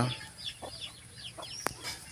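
Faint chickens calling: short, high cheeping notes scattered through a pause. A single sharp click comes just before the end.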